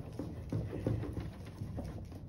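Back of a spoon rubbed quickly over paper on an inked lino block to burnish a print. The rubbing is low and uneven, with a few soft taps.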